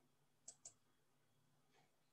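A computer mouse double-clicking faintly, two quick clicks about half a second in, over near-silent room tone.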